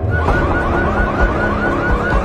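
An electronic siren warbling fast, a rapid run of short rising sweeps about six a second, over low thumps from the film's score.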